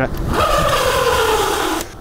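E-bike's rear disc brake stopping the bike from about 30 km/h. It gives a squeal of several tones, sliding down in pitch as the bike slows, over a scrubbing hiss. The squeal lasts about a second and a half and cuts off suddenly near the end.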